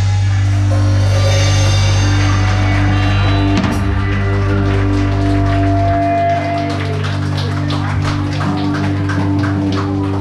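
Live rock cover band playing on drum kit, electric guitars and bass guitar, heard close to the drums. A held low bass note stops about six seconds in, after which separate drum and cymbal strokes stand out over the sustained guitar chords.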